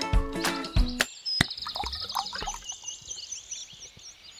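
Background music that stops about a second in, then birds chirping in quick repeated high calls, with one sharp click shortly after the music ends.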